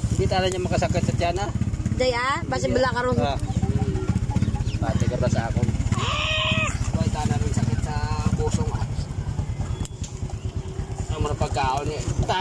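A small engine running steadily with a fast low pulse, with voices talking over it.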